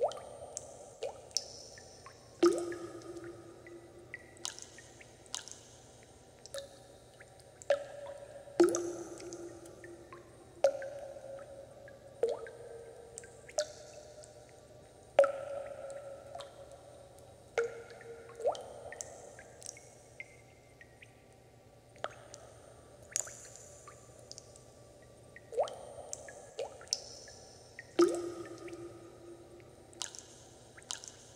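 Water dripping: single drops land at an irregular pace, about one every one to two seconds, each a sharp plink with a short ringing tone that dies away.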